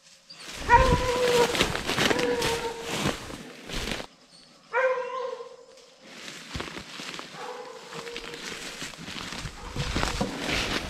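Hunting hounds bawling on a bear track: a long drawn-out bawl held on one pitch, a shorter one about five seconds in and a fainter one near the end, over a rustling noise.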